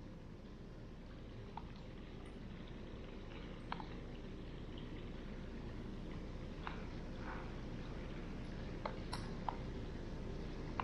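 A steady low hum that grows slightly louder, with scattered small drips and laps of pool water.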